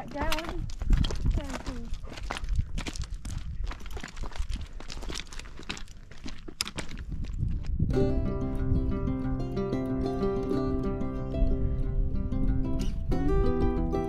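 Footsteps on loose, rocky ground: a run of sharp clicks and crunches of boots on stones. About eight seconds in, background music with plucked-string notes takes over.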